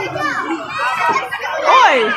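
Many children's voices chattering and shouting over one another, with one loud falling shout near the end.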